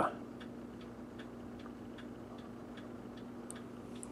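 Faint, regular ticking, about two to three ticks a second, over a low steady electrical hum.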